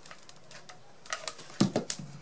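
A few light clicks and knocks in the second half, the loudest just before the end: a hot glue gun being handled and set down on the work table while satin ribbon is pressed in place.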